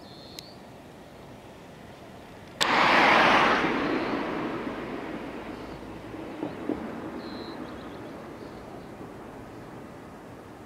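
A passing vehicle: a loud rushing noise starts suddenly about two and a half seconds in, then fades slowly over the following several seconds.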